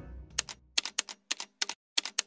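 Typewriter typing sound effect: a run of sharp key clicks, mostly in quick pairs, as end-card text types onto the screen. Background music trails off in the first half second.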